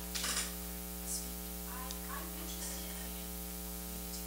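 Steady electrical mains hum in the microphone and PA chain, with a brief hiss just after the start. A faint, distant voice is heard off-mic in the middle, typical of an audience member asking a question from the seats.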